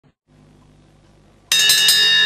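A faint low hum, then about one and a half seconds in a live ska band's music cuts in abruptly, led by high, sustained ringing tones.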